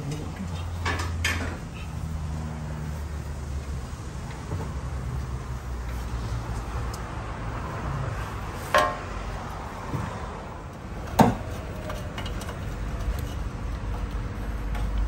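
Metal clanks and knocks from the exhaust pipework under a 1991 Cadillac Fleetwood as it is handled and repositioned with tools, with two sharp metallic clanks that ring briefly, the first near nine seconds and the second about two and a half seconds later, over a low steady hum.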